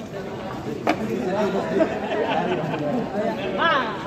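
Chatter of a crowd: many voices talking over one another at close range, with a sharp knock about a second in.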